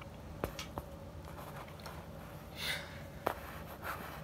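Faint handling noise as the abacuses are moved on the table: a few soft clicks and knocks, with a short breath-like hiss about two and a half seconds in, over quiet room tone.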